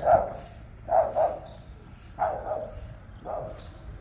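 A dog barking, about five short barks at irregular spacing, two of them in quick succession about a second in.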